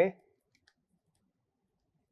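A brief spoken "ok" at the start, then near silence with a few faint clicks of a stylus writing on a tablet.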